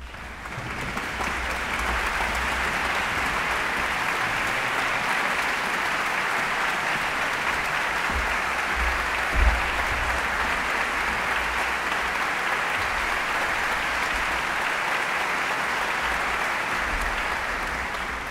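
Large audience applauding steadily, swelling in from silence over the first couple of seconds.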